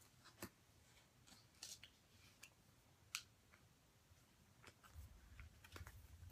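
Near silence with a few faint, scattered clicks and light rustles of headphone packaging and its inserts being handled.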